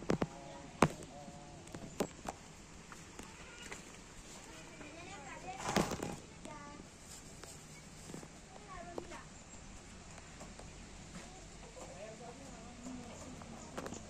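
A horse feeding at a wooden trough in a wooden stall, with sharp knocks against the boards: several in the first two seconds, a louder burst around six seconds and another knock near nine seconds. Faint, indistinct voices sound in the background.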